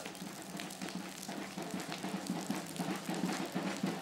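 Wood funeral pyre burning, a dense crackling and hissing of the fire.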